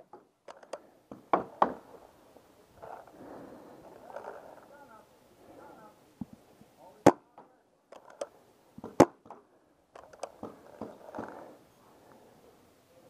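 Scattered sharp pops of paintball markers firing, single shots and pairs a second or several seconds apart.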